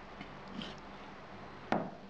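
A cleaver chopping through raw pork intestine onto a wooden chopping board: one sharp knock near the end.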